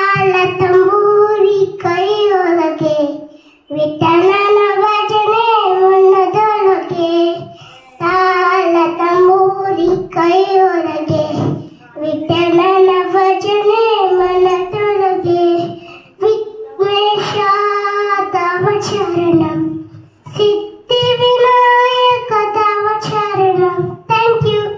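A young boy singing solo and unaccompanied, in phrases of about four seconds with short breaks for breath between them.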